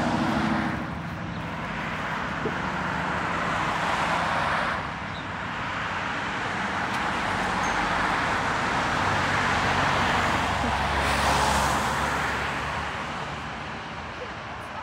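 Road traffic: cars passing one after another, each a rising and fading swell of tyre and engine noise, the longest near the end. Underneath, a minibus engine idles steadily while it stands at the roadside.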